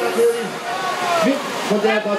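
Men's voices talking and calling, with words too unclear to make out, over a steady rushing noise.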